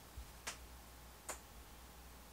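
Turntable stylus riding the silent groove between two songs on a vinyl LP: faint surface hiss with two sharp clicks a little under a second apart.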